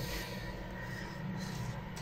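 Faint, soft scraping of a spatula spreading a fluffy soufflé mixture across a baking tray, over a low steady hum.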